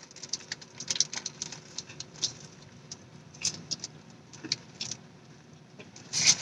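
Biting into and chewing a fried chicken sandwich with a crunchy coating: quiet, irregular crunching clicks, with some rustling of the paper wrapper.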